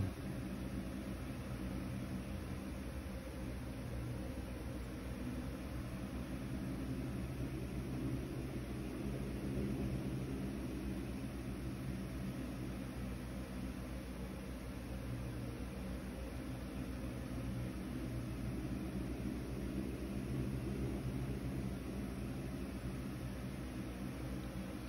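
Steady low hum with a faint even hiss running without change, the sound of a machine or appliance in the room.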